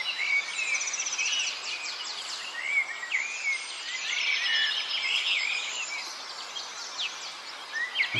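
Outdoor birdsong: several small birds chirping, with many short rising and falling whistled notes and a few quick trills, over a faint steady background hiss.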